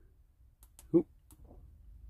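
A few faint clicks from the side e-switch of a Wurkkos HD20 torch as it is pressed and held to step the brightness up from low through medium and high.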